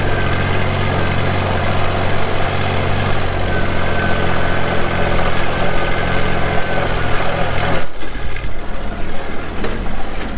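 Small farm tractor's engine running steadily while pulling a four-row planter across a field. Just before the end its sound suddenly drops and turns quieter, with less low rumble.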